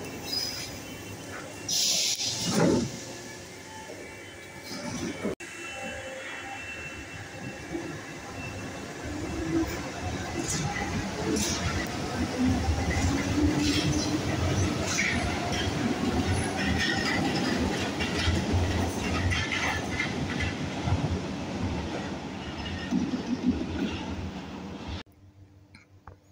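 Paris Métro MF67 train pulling out of the station: a short loud hiss about two seconds in, then running noise with a rising motor whine and sharp clicks from the wheels over the rails.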